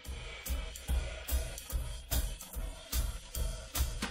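Jazz drum kit track, separated out of a jingle by stem splitting, playing back a steady rhythmic beat of low thumps and sharp cymbal strikes.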